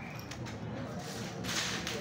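A short swish about one and a half seconds in, as a bundle of dry sticks is pushed across the floor, with a few light clicks and faint murmuring around it.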